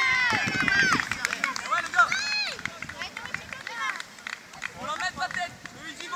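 Several high-pitched children's voices shouting and cheering just after a goal goes in. The shouts are loudest in the first second or so, with another burst about two seconds in, then thin out to scattered calls.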